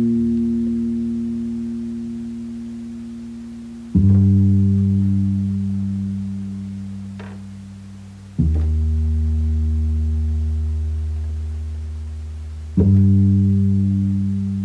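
Bass part played alone on a keyboard: four long, low notes, each struck about every four seconds and left to ring and slowly fade.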